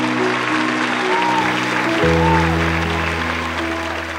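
Studio audience applauding over background music of held chords, with the chord changing about halfway through.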